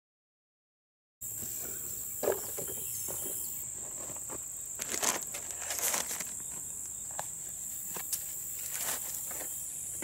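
Outdoor garden sound starting about a second in: a steady high-pitched insect drone, with scattered rustles and knocks of hands handling plastic plant pots and soil, and water poured from a container onto the soil around the middle.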